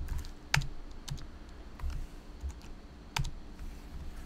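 Computer keyboard typing: scattered keystrokes, with two sharper ones about half a second in and about three seconds in.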